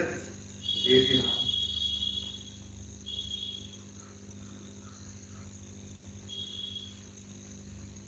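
A cricket trilling in three bouts of a high, steady trill: a long one of nearly two seconds starting just under a second in, then two short ones around three and six seconds in.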